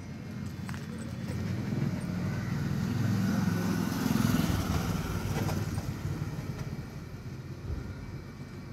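A motor vehicle passing by: its engine and road noise build up, peak about four seconds in, and fade away.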